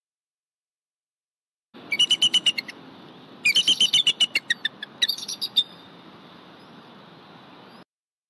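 Bald eagle calling: three runs of rapid, high, piping chitter notes, the first two long and loud and the last shorter, over faint background noise.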